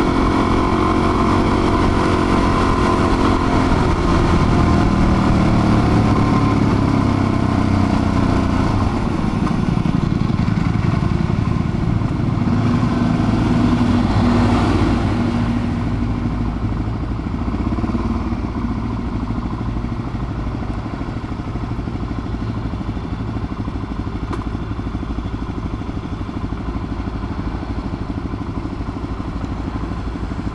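Suzuki DR-Z400's single-cylinder four-stroke engine running while the motorcycle is ridden, its pitch falling over the first several seconds as it slows. A short swell of rushing noise comes about halfway through, then the engine runs quieter and steadier in the second half.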